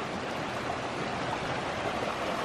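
Small mountain creek flowing over stones: a steady rushing of water.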